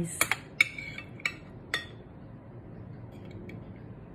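A metal spoon and fork clink against a ceramic plate while steak is cut and scooped: about five sharp clinks in the first two seconds, one of them ringing briefly.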